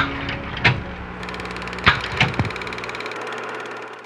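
Short sound-effect hits and whooshes over a steady hiss and low hum. One hit comes at the start, another just after half a second, and three close together around two seconds in. The hum drops away after about three seconds and the hiss fades out at the end.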